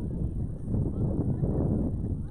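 Wind rumbling on the microphone, an uneven low noise, with faint distant calls above it.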